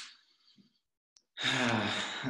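A man sighs, a short breath out, while thinking over a question. A pause follows with a faint click, then a drawn-out hesitant voiced 'uhh' begins about one and a half seconds in.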